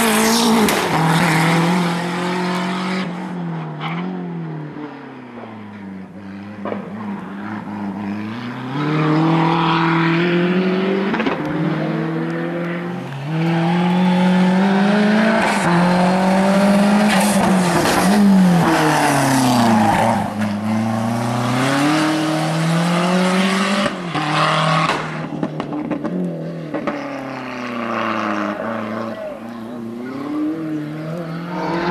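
Fiat Uno Turbo's turbocharged four-cylinder engine revving hard through a slalom: the pitch climbs and drops over and over as the driver works the throttle and gears, fading briefly as the car moves off a few seconds in, then loud again as it comes back close.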